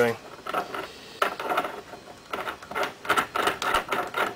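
Irregular light metal clicks and scrapes as the steel thread-in shell holder is handled and turned on the ram of an RCBS 50 BMG reloading press.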